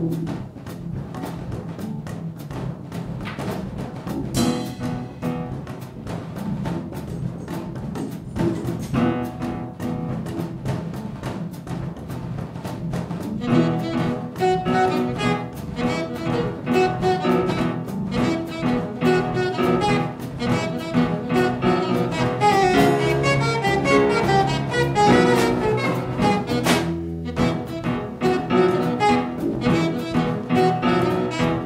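Small jazz combo playing a grooving blues tune: a plucked upright double bass carries a repeating low figure over drums and cymbals. About halfway in, a saxophone comes in with the melody and the band gets fuller and louder, with a brief break in the groove near the end.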